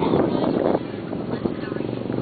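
Several people talking, loudest in the first part, over a steady low rumble like wind on the microphone.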